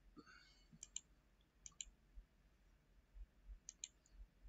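Faint computer mouse clicks, mostly in quick pairs, three times over near silence.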